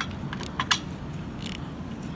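Plastic parts of a Transformers action figure being pushed together by hand: a handful of small, sharp clicks and scrapes as a peg is worked into its socket.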